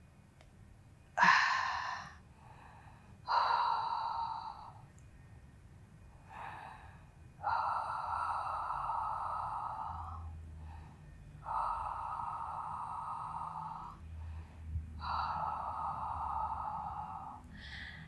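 A woman breathing audibly through the mouth: about six slow, even breaths with pauses between them. Most last two to three seconds, and the first, about a second in, starts more sharply.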